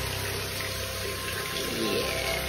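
Water running in a bathtub and being poured from a cup over a wet puppy's back: a steady splashing hiss.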